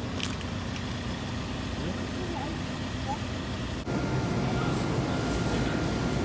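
Steady low rumble of outdoor background noise. About four seconds in it cuts abruptly to a slightly louder indoor room noise with a faint steady high hum.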